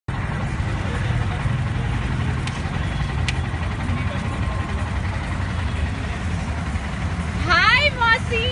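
Steady low vehicle-engine rumble with street noise, as from an auto rickshaw or nearby traffic. A man's voice starts near the end.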